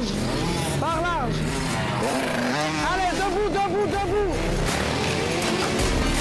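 Small Honda youth dirt bikes' engines revving up and easing off over and over as they ride through mud, with a voice also heard.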